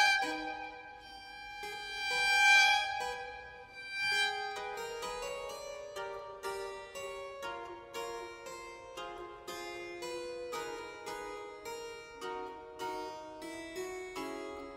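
Contemporary classical concerto music for a solo instrument and chamber orchestra. Long high notes are held and swell for the first few seconds. From about four and a half seconds in, a busy run of short, plucked notes takes over.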